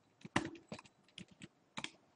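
Computer keyboard keys being typed: a quick, irregular run of about eight keystrokes with short pauses between them.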